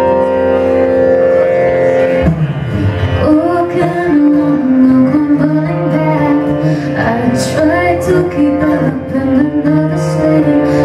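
Acoustic guitar playing a slow song intro. From about three seconds in, a woman's voice comes in singing a melody over it.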